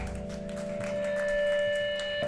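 Electric guitar ringing out through its amp in a steady held tone that swells a little past the middle.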